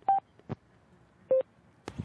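Two short electronic beeps from a Sena 10C EVO motorcycle Bluetooth headset, the first higher-pitched than the second and about a second apart, with a faint click between them. They are the headset answering a short press of its phone button and calling up the phone's voice assistant.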